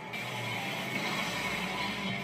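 Anime episode soundtrack playing through the speakers: a steady, noisy sound effect with faint music underneath.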